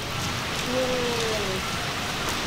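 Steady rain falling on a wet paved street, an even hiss of drops.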